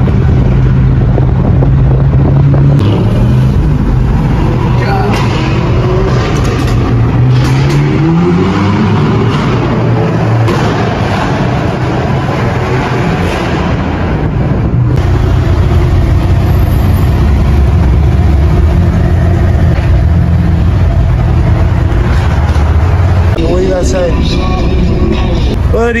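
Car engine running hard under acceleration, heard from inside a car, its pitch rising in several sweeps through the gears in the first third, then settling into a steady low drone in the second half.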